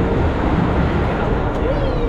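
Gondola lift terminal machinery, as cabins roll through the station on the drive and guide wheels: a loud, steady rumble with rattling.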